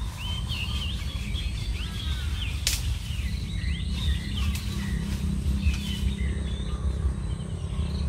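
Small birds chirping and calling over a steady low rumble, with one sharp click a little before the middle.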